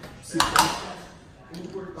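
A brief clatter of a cup or utensil at a kitchen counter about half a second in, as a pre-workout drink is made up.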